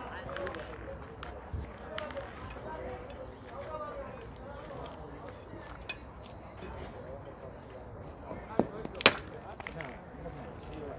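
Low murmur of people talking in the background, with two sharp clacks about half a second apart near the end, the second one louder.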